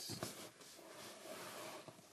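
A couple of faint clicks, then soft rustling: hands handling and setting plastic Lego pieces.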